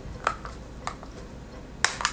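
Clear plastic toy capsule clicking as it is handled. There are two light clicks and then a sharper, louder one near the end.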